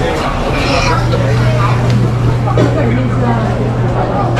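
Nearby voices talking in a busy street, over a steady low hum that comes in about half a second in.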